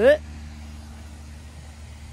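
A low, steady background rumble with no distinct events, after a last spoken word at the very start.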